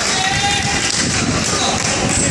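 Gym sounds during a basketball game: a ball bouncing on the hardwood court and players' feet, with voices from the court and stands echoing in the hall.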